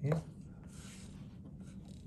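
Faint, soft rustling of a silkworm moth fluttering its wings, after a short spoken "yeah" at the start.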